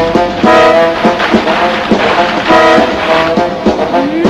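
Background music score: sustained chords over a steady percussive beat, loud throughout.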